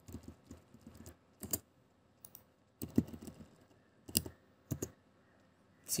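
Typing on a computer keyboard: irregular keystrokes, with several sharper, louder key presses among them.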